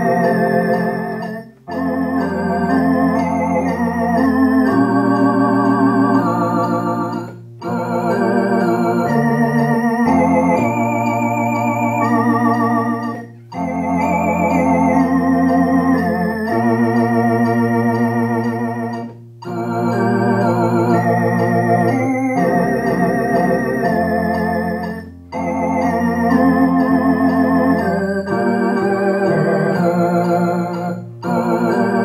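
Electronic organ playing a hymn in full chords over a bass line, the notes held, phrase by phrase, with a brief break between each phrase every few seconds.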